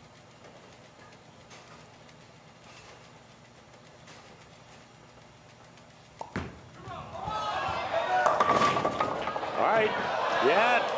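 A quiet hush, then about six seconds in a sharp crash of a bowling ball into the pins, leaving the 6 pin standing. Right after it, many crowd voices rise together in reaction.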